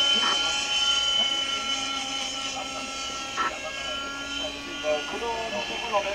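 OS 61 two-stroke glow engine of a Kyosho Caliber 60 RC helicopter running in flight, a steady high-pitched whine. Voices come in near the end.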